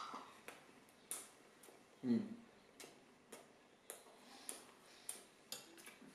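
Metal spoon clicking against a small jar as food is scooped out: light, irregular clicks, one or two a second.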